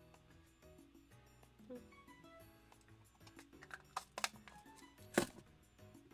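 Quiet background music, with a few sharp clicks in the second half, the loudest about a second before the end.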